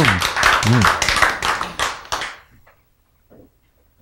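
Hands clapping in a quick, even run of sharp claps that fades out a little over two seconds in, leaving only faint small sounds.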